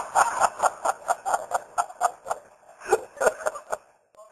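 Laughter after a joke, a quick run of ha-ha pulses fading away, with a short fresh burst of laughing about three seconds in.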